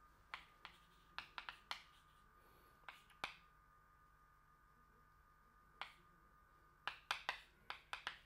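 Chalk tapping and scratching on a blackboard as a formula is written: faint sharp ticks in quick clusters near the start and again near the end, with a pause of a couple of seconds in between. A faint steady hum lies under it.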